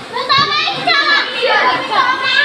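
Children's high-pitched voices, talking and calling out as they play nearby.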